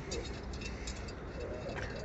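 Quiet outdoor background with faint, distant voices and a few light ticks, no close sound standing out.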